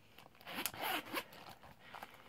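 The metal zipper of a Kate Spade zip-around wallet being unzipped: a rasping run of about a second, starting about half a second in, followed by light handling of the wallet.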